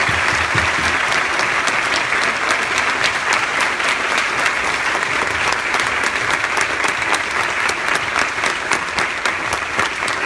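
Audience applauding, a dense, steady clapping of many hands.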